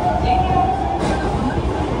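Osaka Metro 66 series subway train pulling away from a station, heard from inside the car: a steady low rumble of wheels and running gear, with an electric motor whine in the first half-second or so.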